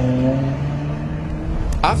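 A car engine running as the car drives past, a steady low hum whose pitch eases down and then holds. A man's voice starts right at the end.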